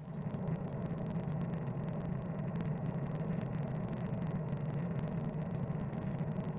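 Airliner cabin noise in cruise flight: a steady low drone of jet engines and rushing air, heard from inside the cabin by a window.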